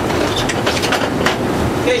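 Boat's engines running with a steady low drone, with irregular sharp clicks and knocks over it.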